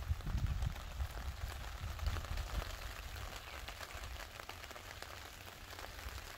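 A light patter of drops falling on a fabric pop-up canopy overhead, many small irregular ticks, with wind rumbling on the microphone after a storm.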